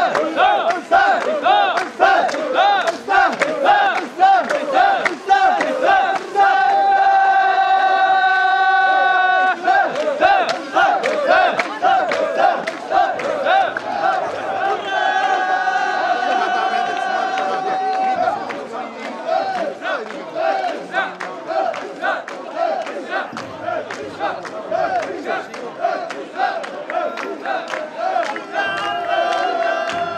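Mikoshi bearers shouting a rhythmic carrying chant in unison, about two calls a second, as they carry a shrine's portable shrine. Long held notes rise over the chant three times.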